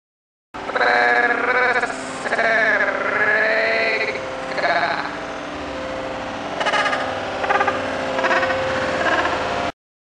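A woman singing with a wavering, wobbling pitch, holding and sliding long notes; it cuts in suddenly about half a second in and cuts off suddenly near the end.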